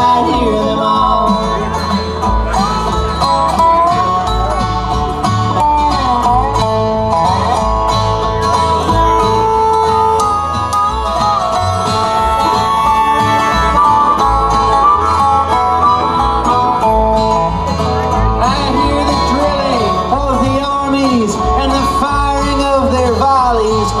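Live acoustic string band playing an instrumental stretch of a folk/bluegrass song: resonator guitar and acoustic guitar over a steady beat, with sliding, bending notes running through it.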